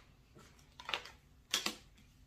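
Tarot cards being drawn from the deck and laid down on the table: a soft card snap or tap a little before one second in, and another pair of them about a second and a half in, with faint room tone between.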